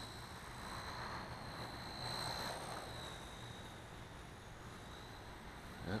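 Blade Nano CP S micro collective-pitch RC helicopter in flight, heard faintly as a thin, high motor-and-rotor whine that wavers slightly in pitch as the throttle and pitch change, swelling a little about two seconds in.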